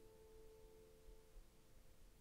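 Near silence, with faint sustained tones of soft background music that fade out a little past halfway.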